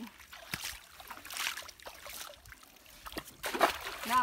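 River water splashing and sloshing in a few irregular bursts, the loudest a little before the end.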